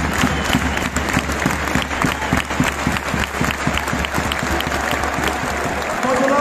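Stadium crowd applauding, many hands clapping densely and steadily.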